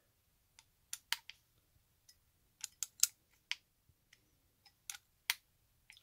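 Light, sharp clicks, a dozen or so at irregular intervals and some in quick pairs, as a metal hex driver is seated in and turned on the small cap screws of a plastic spur gear, snugging each screw down in turn.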